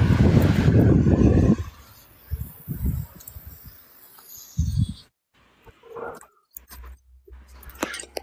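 Rumbling wind and handling noise on a handheld phone microphone, strong for about the first second and a half, then faint scattered bumps with the audio cutting out briefly twice.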